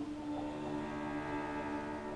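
Cello holding long, steady bowed notes in a slow classical piece. A higher sung phrase breaks off right at the start.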